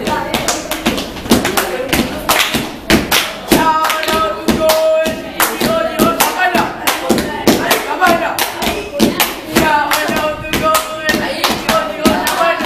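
A small group of children clapping their hands, many quick claps at an uneven rate of about three or four a second, with their voices over the claps.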